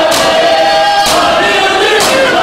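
A crowd of men chanting a noha in unison, with loud strikes of hands on bare chests (matam) together about once a second.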